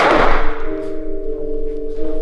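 A single loud thunk in the first half second as a machete is swung against a wooden wall panel. Under it and after it, background music of steady held tones plays on.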